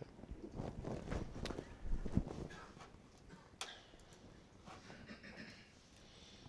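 Faint room noise in a lecture room: scattered soft knocks, taps and shuffles, with a low thump about two seconds in and a sharp click about a second and a half later.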